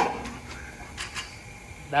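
Pitching machine firing a fastball: one sharp, loud crack at the start as the ball is shot out, followed by a few faint knocks as the ball hits and bounces.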